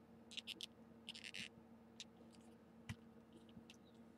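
Faint clicks and rustles of a plastic action figure being handled: a few soft rustling bursts in the first second and a half, then a handful of single clicks.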